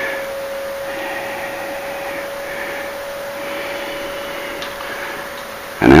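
A steady mechanical hum in a small room, with one constant mid-pitched tone held throughout.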